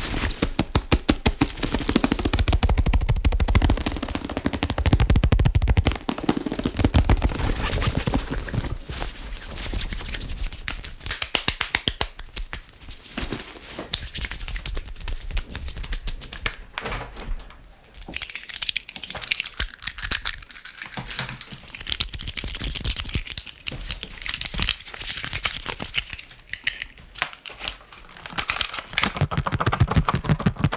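Fast close-microphone ASMR trigger sounds: rapid tapping, clicking and scratching on a camera bag and its fittings, then quick hand movements. Near the end a plastic fruit container is handled.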